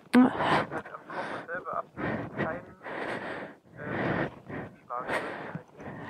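A person breathing heavily close to the microphone, in breathy bursts about once a second.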